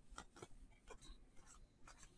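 Faint, soft ticks of trading cards being slid one off another by hand, about five small flicks in near silence.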